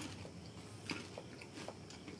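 A person chewing a crisp black sesame and almond cracker, a few faint crunches spread through the two seconds.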